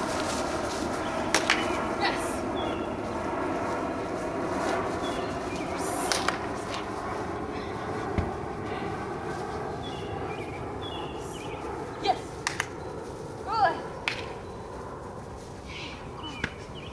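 Outdoor yard ambience: a steady background hiss with faint, short high chirps and a few sharp clicks scattered through it. Near the end comes a brief call that rises and falls.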